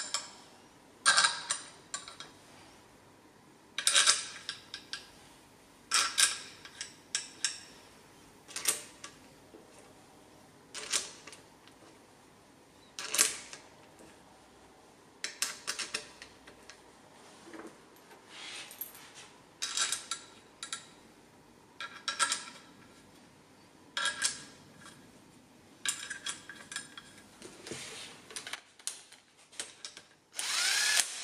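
Small metal parts clinking as they are picked up and set down on an aluminium Subaru cylinder head and the bench, in sharp clicks every second or two, some in quick clusters of two or three.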